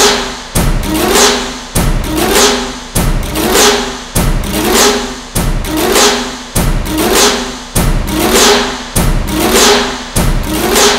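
Dramatic serial background score: a looped hit that strikes eight times, about every 1.2 seconds. Each hit is a sudden thud with a falling whoosh and a short rising tone, and it fades before the next one comes in.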